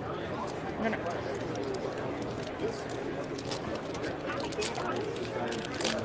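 Foil trading-card pack wrapper crinkling and being torn open by hand, a scatter of short crackles, over a background of voices.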